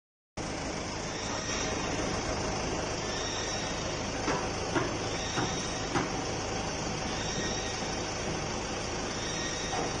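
Forklift engine running steadily, with four short knocks over about two seconds a little before halfway as wooden cable drums are handled onto the forks.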